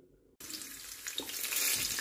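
Near silence, then, about half a second in, a steady hiss of hot oil sizzling in a frying pan around pieces of red chili pepper.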